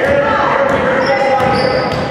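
Basketball being dribbled on a hardwood gym court, with voices echoing in the hall.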